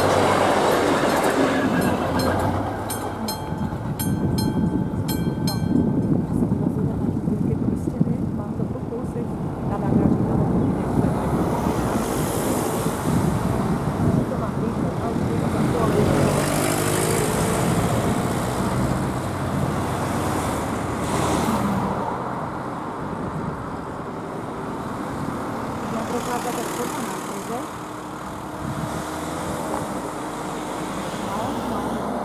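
Level-crossing mechanical bell striking about two to three times a second, stopping about six seconds in, while a vintage diesel railcar runs over the crossing with its engine running low. Then several road cars drive over the crossing one after another, each swelling and fading.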